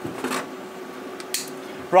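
Light clinks and scrapes of small steel parts and hand tools being handled on a metal-topped workbench, over a faint steady hum.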